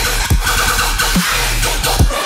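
Dubstep music processed as 8D audio, panned around the listener: a heavy, distorted synth bass over a sustained sub-bass, with two kick-drum hits about a second apart.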